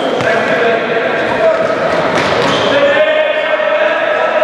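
Futsal ball being kicked and bouncing on the hall floor: a few sharp knocks, one near the start and a couple more around two seconds in.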